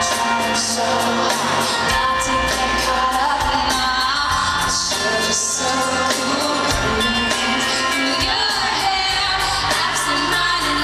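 Live pop concert heard from the audience in a large hall: a woman singing into a microphone over band accompaniment.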